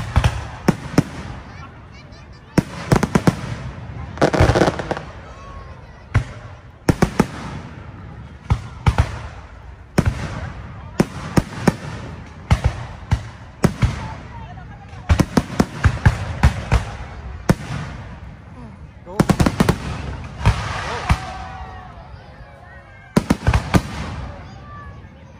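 Aerial fireworks shells bursting overhead: sharp bangs throughout, many coming in rapid clusters of several at once.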